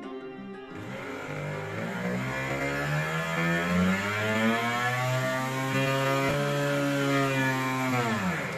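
The motor of a homemade flexible-shaft rotary drill spins up as its speed knob is turned, its whine rising in pitch over the first few seconds and then holding steady. The pitch starts to drop right at the end as the speed is turned down.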